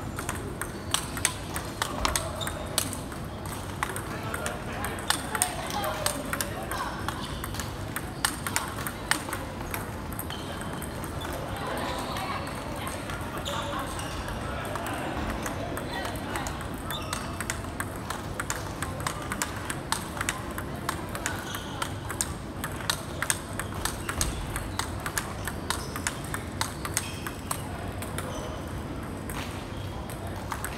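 Table tennis balls struck by rubber paddles and bouncing on tables: a rapid, irregular run of light, sharp clicks echoing in a hard-floored hall, thinner for a while around the middle.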